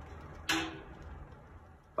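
Faint steady hum of conditioned air blowing from an office ceiling supply diffuser, its zone damper now open, under a single spoken word about half a second in.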